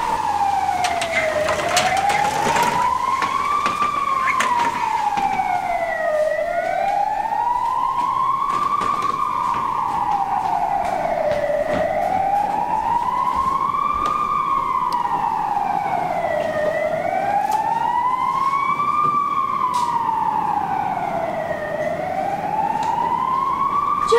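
Emergency-vehicle siren on a slow wail, rising and falling in pitch about once every five seconds, with a few short knocks in the first few seconds.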